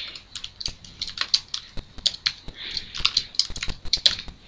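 Typing on a computer keyboard: irregular keystrokes in quick runs as a line of code is entered.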